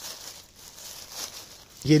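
Dry leaf litter rustling and crackling faintly as a hand moves through it. A man's voice starts near the end.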